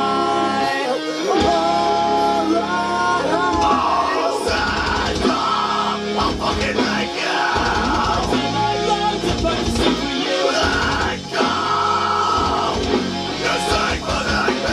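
Loud rock song with sung and yelled vocals over electric guitars; drums come in heavily about four seconds in.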